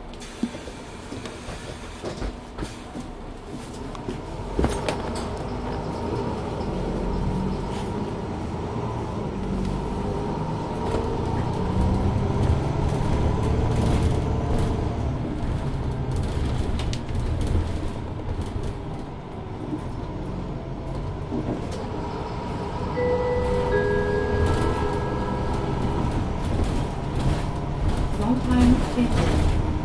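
Inside a Mercedes-Benz Citaro 2 LE city bus, its Daimler OM 936 h diesel engine and ZF automatic gearbox working under load. The drone swells for several seconds, eases off briefly, then builds again, with a faint steady whine, cabin rattles, and a few short beeping tones near the end.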